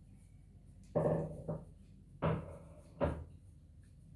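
A woman coughing: two bursts about a second in, then two sharper coughs about two and three seconds in.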